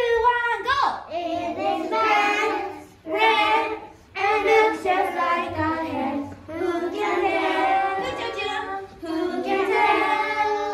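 A group of young children singing a song together, with a woman's voice singing along. The singing comes in short phrases with brief pauses between them.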